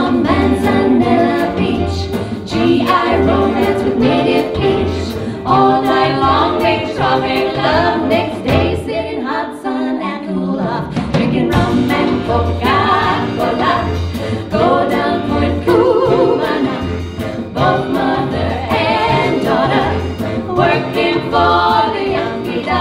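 Live big band playing swing, with three female vocalists singing together over it; a regular bass line and ticking cymbals keep the beat, and the bass drops out briefly around the middle.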